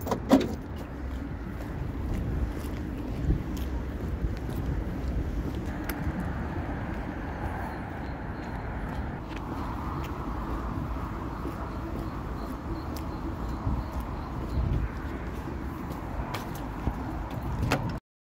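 Steady outdoor noise of road traffic and vehicles, swelling and fading through the middle, with scattered clicks and knocks from handling and walking.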